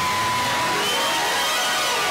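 Stage fog machine blowing out smoke with a steady hiss, a faint held tone running above it.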